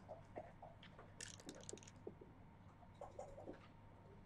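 Faint backgammon play: soft clicks of checkers and dice, with a quick rattle of dice thrown onto the board about a second in.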